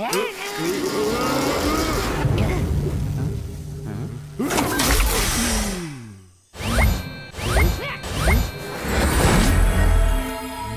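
Cartoon soundtrack of wordless character voices and comic sound effects over music, with a long falling glide about five seconds in that cuts off suddenly, followed by a few short rising chirps.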